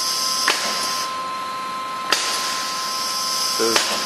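Air-actuated three-jaw chuck on the workhead spindle of an Okamoto IGM-15NC CNC internal grinder cycling open and closed. There are three sharp clacks, about a second and a half apart, with compressed air hissing between them, over a steady machine whine.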